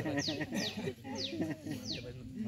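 Animal calls: a short high call that falls in pitch, repeated about twice a second, with faint voices underneath.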